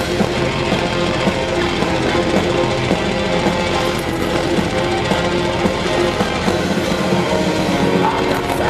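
A metal band playing live at full volume, with distorted electric guitars and drums, recorded from within the audience.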